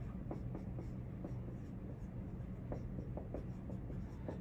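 Marker writing on a whiteboard: a run of short, faint strokes as words are written out.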